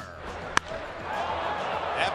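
A wooden baseball bat cracks once, sharply, as it meets a pitch and drives it deep to the outfield. Crowd noise from the ballpark swells just after.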